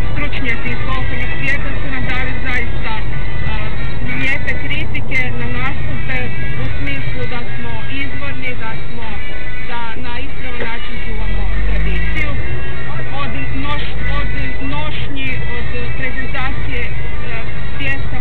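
Car radio playing music with a singing voice, heard inside a moving car's cabin over a constant low engine and road rumble.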